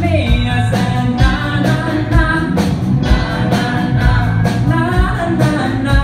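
Live pop band playing a groove on drum kit, bass, electric guitar and keyboard under a sung vocal line, with a steady drum beat.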